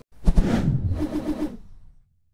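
Short sound effect for an animated section title: a sudden hit about a quarter second in, then a brief tone that fades out.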